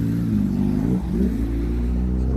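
Sport motorcycle engine idling steadily, with a brief blip of the throttle about a second in.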